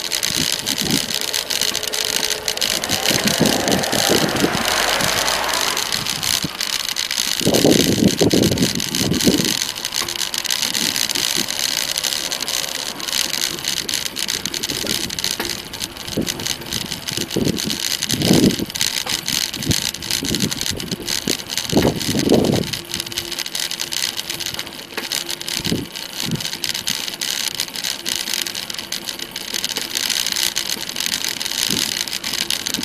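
Steady road and wind noise from riding a bicycle along a lane, broken by several short, low rumbles of wind on the microphone, the longest about a quarter of the way through.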